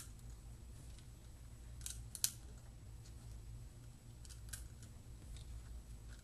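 A few small sharp plastic clicks as etched button caps are pressed onto an Insteon KeypadLinc V2 dimmer keypad, the loudest about two seconds in, over a low steady hum.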